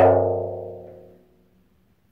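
A single stroke on a bendir frame drum at the start, ringing out with a low boom and dying away over about a second and a half.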